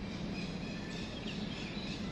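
Outdoor background ambience: a steady low hum of distant noise with a few faint, short bird chirps.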